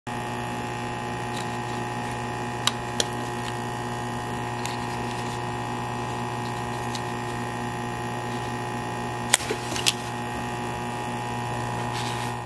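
A steady electrical hum with several fixed tones, with sharp clicks over it: two a few seconds in and a louder cluster of clicks and a brief scrape about nine to ten seconds in.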